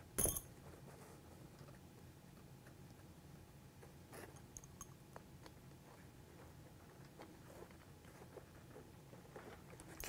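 Small metal tool handling: a sharp clink just after the start as a wrench is picked up, then faint scattered clicks as it tightens a nut on a small air cylinder.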